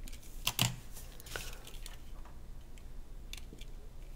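A few light, sharp clicks and taps from fingers handling a small die-cast Hot Wheels toy car, the clearest about half a second in.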